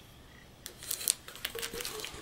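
Faint handling sounds: light clicks and rustling as a tin can is lifted off a sheet of Reflectix foil-bubble insulation. They begin about half a second in, after a brief quiet moment.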